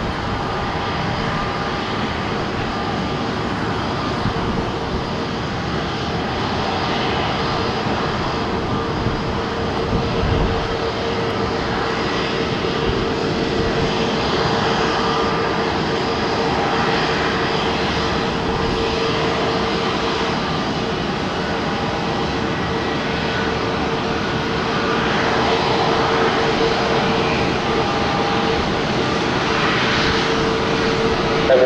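Jet engines of an Airbus A321neo airliner running during landing and runway roll-out: a steady roar with a constant whine, swelling slightly in the last few seconds.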